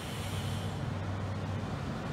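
A steady, unchanging low engine hum, like a vehicle idling, over an even background of outdoor noise.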